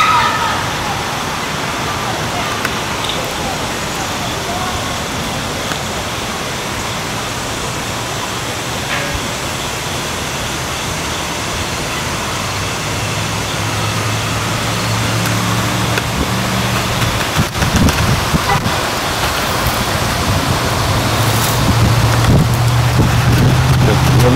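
Steady outdoor hiss, with a low engine-like hum coming in about halfway and growing louder toward the end.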